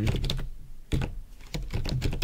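Typing on a computer keyboard: a run of uneven key clicks as a line of code is entered.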